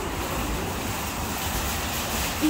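Steady outdoor background noise, a low rumble with hiss over it, picked up by a handheld phone while walking.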